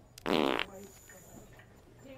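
A fart-prank noise: one loud fart sound lasting under half a second, shortly after the start.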